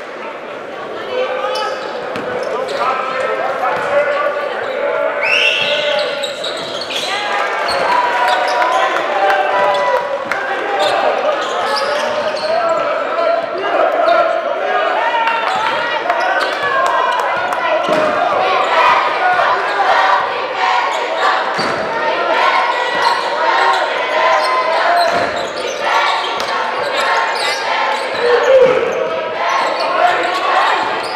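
Basketball dribbled and bouncing on a hardwood gym floor, in short knocks, over constant crowd chatter that echoes around a large gym.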